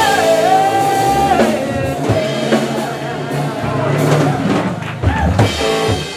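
Live blues band playing: electric guitar, bass and drum kit, with a female singer holding one long note for the first second and a half. The drums are prominent, with a cluster of hits about five seconds in.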